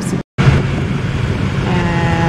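Engine and road noise inside the cabin of a moving Honda Civic: a steady low rumble, with an even engine note rising above it near the end.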